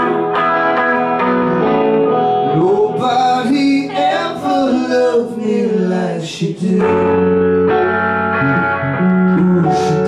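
Live band playing a slow rock song on two electric guitars, a hollow-body and a solid-body, with singing over it.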